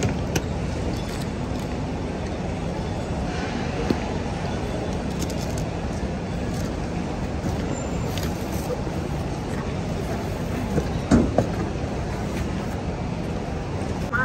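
Steady hum and hiss of an airport check-in hall. A brief voice is heard about eleven seconds in.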